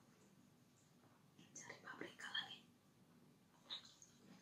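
Faint, close-up mouth sounds of eating: a short cluster of soft wet smacking about a second and a half in, and another brief one near the end, over near silence.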